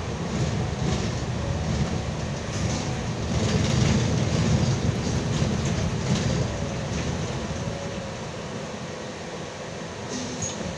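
Interior running noise of a Solaris Urbino 18 III articulated city bus driving on a snow-covered street: a steady low drivetrain and road rumble that swells about four to five seconds in, then eases off.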